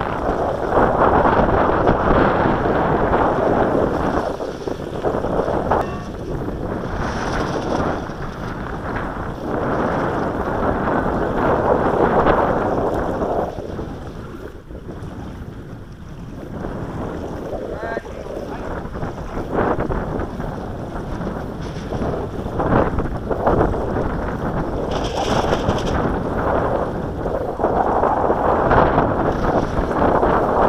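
Wind buffeting the microphone in gusts, a rough rumbling noise that rises and falls and drops to a lull about halfway through.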